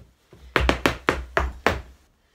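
Irish dance hard shoes striking the floor in a quick run of about six sharp clicks over a little more than a second: a hornpipe step being danced.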